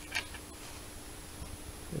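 Quiet workshop room tone with a faint steady hum, broken by one brief soft sound just after the start.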